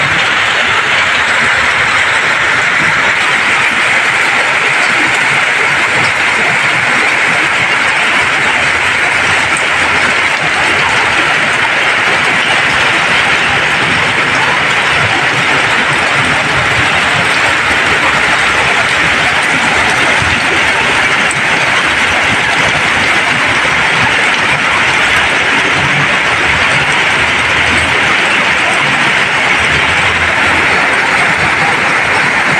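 Heavy tropical downpour: a loud, steady, dense hiss of rain pelting a flooded street, with vehicles now and then churning through the floodwater.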